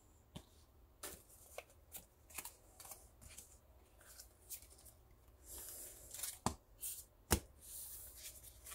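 Pokémon trading cards handled and flipped through one after another: quiet, irregular flicks and slides of card against card, with a couple of sharper snaps near the end.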